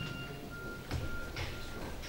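A pause in a man's speech: quiet room tone with a faint, high, steady whistle-like tone that breaks off and returns a few times, and a soft knock about a second in.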